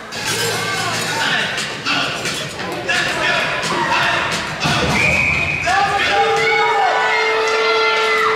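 Spectators in an ice arena shouting and cheering, many voices overlapping and getting louder from about the middle, with a few long, steady held notes near the end.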